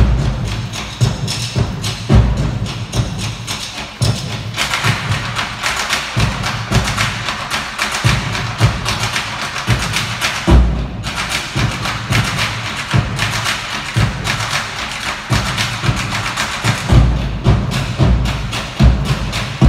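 Live ensemble music driven by a steady beat of deep drum strikes, with a fuller, brighter layer of instruments coming in about four seconds in. There is one heavy strike just past the middle and a cluster of heavy strikes near the end.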